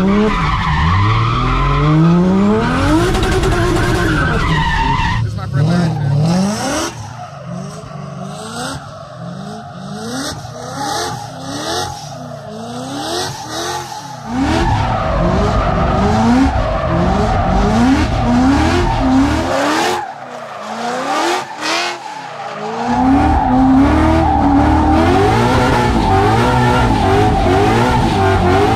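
Drift car engine revving hard, the revs sweeping up and falling back again and again, with tyres skidding and squealing. The sound eases off in the middle and drops out briefly about twenty seconds in.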